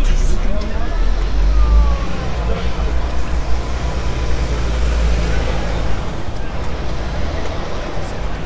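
Busy street sound: voices of people nearby, loudest in the first couple of seconds, over a steady low rumble of road traffic.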